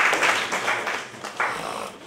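Audience applauding in a hall, the clapping dying away after about a second, with a short last flurry just before it stops.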